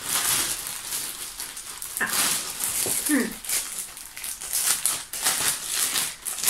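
Clear plastic packaging bag crinkling and rustling as it is handled and worked open, in quick irregular crackles.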